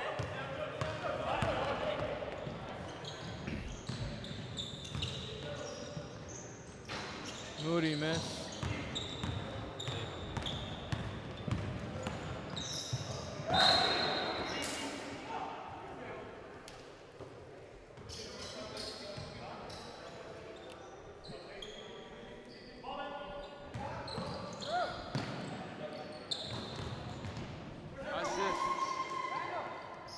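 Basketball game sounds in a large gym: the ball bouncing on the wooden court as it is dribbled, with players' voices and calls throughout.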